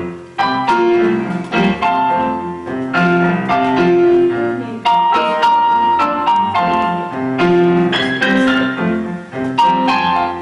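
Electronic keyboard played with a piano sound: gospel chords of several notes struck in a steady rhythm.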